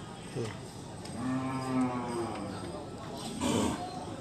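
A cow lows once, a long, low moo starting about a second in and lasting about a second and a half. A short noisy burst follows near the end.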